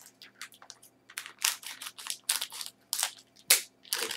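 Irregular sharp clicks and short scrapes of small metal parts being handled and unscrewed: compression fittings for a PC water-cooling loop being opened.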